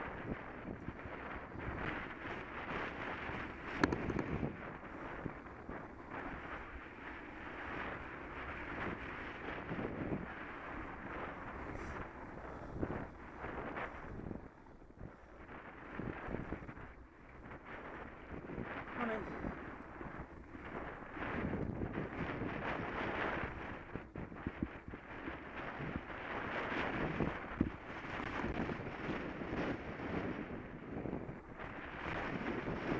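Wind buffeting the microphone of a camera on a moving bicycle, mixed with the rumble and rattle of the bike's tyres on a rough, patchy tarmac path, with an occasional sharp knock.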